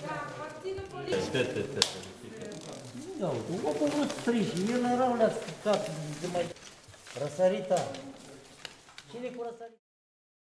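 People talking indistinctly in a room, with paper ballots rustling and a few sharp clicks of handling, the strongest about two seconds in. The sound cuts off just before the end.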